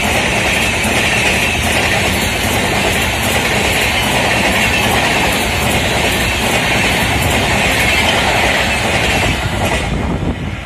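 Coaches of a superfast express passing close at speed: a loud, steady rush of wheels on rail with clicking over the rail joints. The noise falls away near the end as the last coach goes by.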